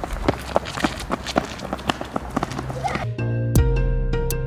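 Several people running on a concrete sidewalk: quick, uneven footfalls. About three seconds in, music with held notes comes in.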